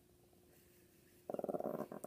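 Chihuahua growling, a possessive guarding growl at a hand reaching toward the presents and treats she is protecting. The rapid pulsing growl starts suddenly about two-thirds of the way in.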